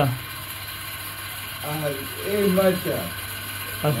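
A man's voice talking briefly, about midway through, over a steady mechanical background noise.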